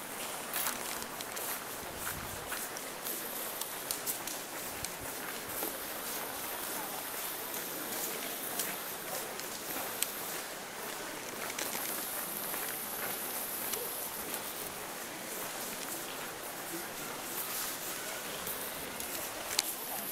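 Outdoor ambience of footsteps crunching on gravel, with faint voices and many small scattered clicks.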